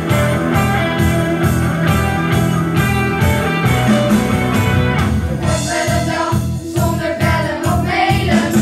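A live school band of acoustic and electric guitars with a tambourine playing a song with a steady beat, with voices singing.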